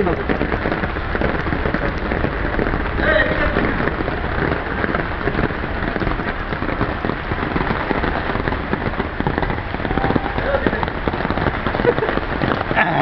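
Heavy rain falling steadily, a dense even crackle of drops.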